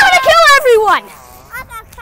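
A young person's high voice calling out loudly for about a second, its pitch sliding up and then down, followed by fainter voices.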